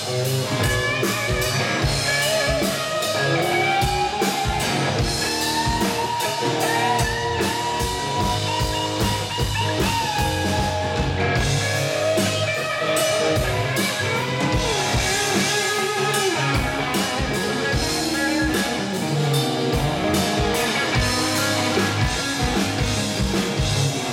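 Live band playing an instrumental passage: electric guitar taking a lead with long, bending notes over drum kit, bass and strummed acoustic guitar.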